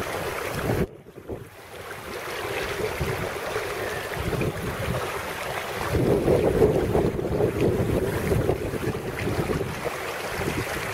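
Wind buffeting the microphone over water splashing and washing along the hull of a sailing duck punt on choppy water. The sound drops away suddenly about a second in, builds back, and is louder from about six seconds on.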